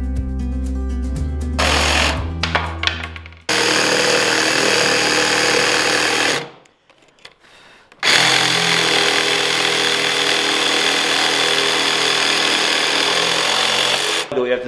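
Background music for the first few seconds, then a DeWalt cordless jigsaw sawing through wood nearly two inches thick, its blade stroke only just long enough to get through the stock. The cutting stops for about a second and a half near the middle, then runs on steadily.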